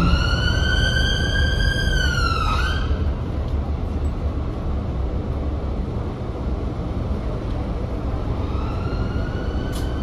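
Emergency vehicle siren wailing: it rises to a held high tone, drops away after about two and a half seconds, then rises faintly again near the end. Underneath runs the steady engine and road noise of the Volvo B5TL double-decker bus, heard from its upper deck.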